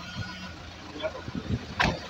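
A vehicle engine idling with a steady low hum, under faint voices and a short knock near the end.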